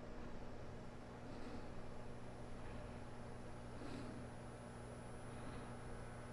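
Faint steady mains hum with a thin, steady high-pitched tone above it: the 10 kHz sine test signal driving the Carver MXR2000 receiver's amplifier on the bench.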